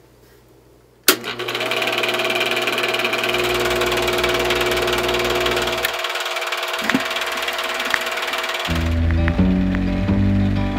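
A switch clicks about a second in and a film projector starts running with a steady rapid clatter and hiss. Near the end music with a bass line comes in under it.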